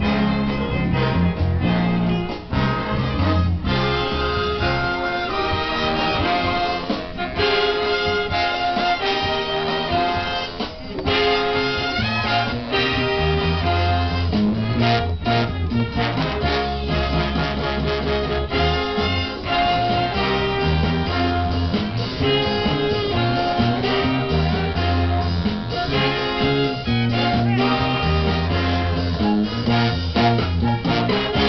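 A live big band playing jazz, with trumpets and trombones carrying the tune over a bass line.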